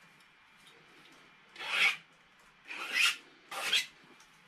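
A cloth rag rubbed briskly over a painting tool in three short rasping strokes: one about a second and a half in, one at about three seconds and one near the end.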